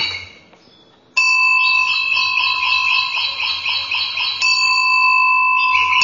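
A steady ringing tone, like an electronic bell or alarm: several high pure pitches held together with a fast warble of about four pulses a second. It starts abruptly about a second in, shifts slightly in the middle, and cuts off sharply at the end.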